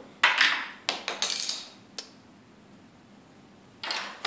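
A sprue of injection-molded white POM plastic parts clattering and scraping as it is handled and set down on a tabletop: several knocks and rattles in the first two seconds, then quiet room tone.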